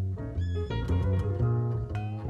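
Live jazz trio music: a grand piano playing a run of notes over sustained low double bass notes.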